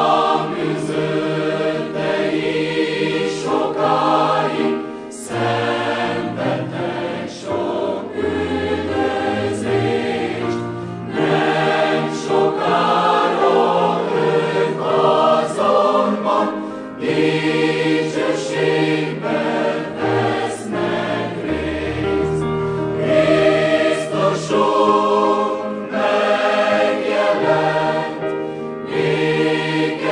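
Large mixed choir of women's and men's voices singing together from songbooks, several voice parts sounding at once.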